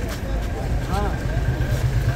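Vehicle engine idling with a steady low hum, while people's voices are heard over it.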